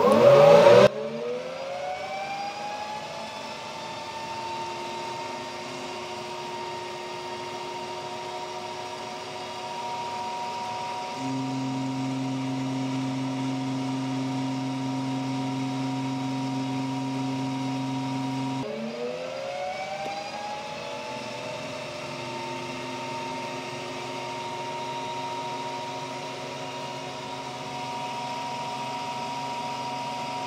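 Metal lathe spinning up, its gear whine rising in pitch and settling to a steady note while a carbide tool cuts grooves in a stainless steel part. A deeper steady hum sits under it for several seconds midway, then the lathe is heard spinning up again with the same rising whine.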